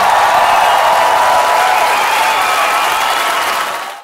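Audience applauding and cheering, a dense steady clatter that fades out near the end.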